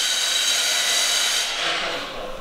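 A loud, steady, high-pitched hiss with a thin whine running through it, fading away in the second half.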